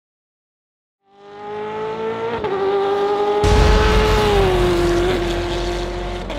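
Race car engine with a high, steady note, fading in about a second in. About three and a half seconds in, a deep boom joins it, and a second later the pitch drops slightly.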